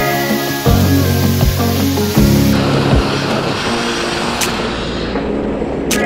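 Background music with a steady beat laid over the steady hiss of a grit blaster stripping a narrowboat hull. The music fades out about halfway through, leaving the blasting hiss.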